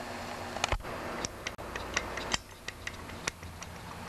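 Light metallic clicks, about a dozen at irregular intervals, as the piston and connecting rod of a Stihl TS 420 cut-off saw's two-stroke engine are rocked sideways by hand. The clicking comes from play where the worn connecting rod rides on the crankshaft.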